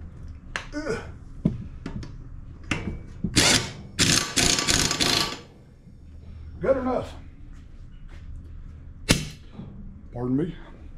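Pneumatic impact wrench hammering a push mower's blade bolt tight: a short burst, then a longer rattling burst of about a second.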